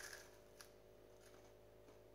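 A brief crisp crunch as a toasted English muffin is bitten into at the very start. After that it is near silence, with a faint steady room hum and a faint click about half a second in.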